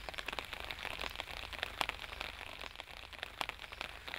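Faint outdoor ambience: scattered light crackles and rustles over a low steady hiss.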